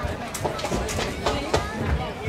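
Indistinct voices of onlookers and players, with a few short shouts.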